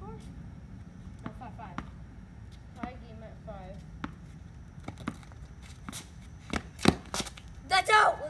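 Tennis ball bouncing on a concrete driveway as it is dribbled: sharp single taps about a second apart, coming quicker and loudest near the end.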